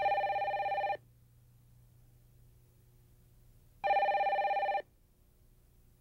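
A telephone ringing twice, each ring a fluttering tone about a second long, the two rings nearly four seconds apart.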